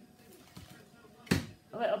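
A single sharp knock on the kitchen worktop, about a second and a half in, as something is set down on it, most likely the bowl of passata.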